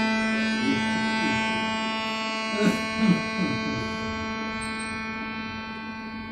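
Double-reed portable harmonium holding one note, its reeds sounding steadily and slowly fading away. Two short knocks come about halfway through.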